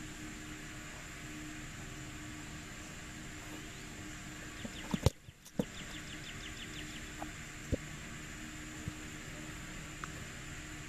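A football kicked off a tee: one sharp thump of the foot striking the ball about five seconds in, over steady outdoor background noise. A few faint knocks follow later.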